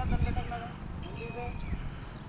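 A man's raised voice speaking in short phrases over outdoor street noise, with low rumbling in the first half-second.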